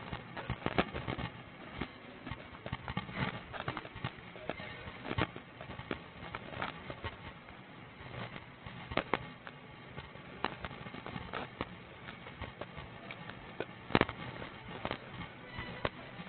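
Scattered sharp clicks and knocks from footsteps on a hard floor and the walking wearer's duty gear and body camera rattling, with one louder knock about two seconds before the end.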